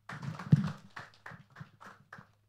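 Handheld microphone being handled and passed on: a run of short knocks and rustles on the mic, the loudest thump about half a second in.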